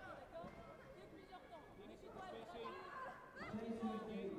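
Indistinct chatter of several overlapping voices, with one voice standing out more clearly near the end.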